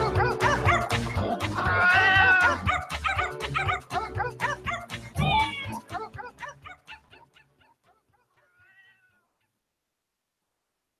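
Music with a steady beat plays for the break and fades out about seven seconds in. A small dog's high yips and whines sound over it, and one faint whine comes near the end.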